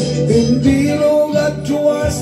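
A man singing into a handheld microphone over a backing track with guitar.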